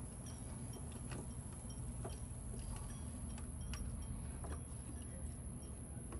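Scattered light metallic clicks and taps, a few a second and unevenly spaced, as a mounting bolt is fitted to a power steering pump. A steady low hum runs underneath.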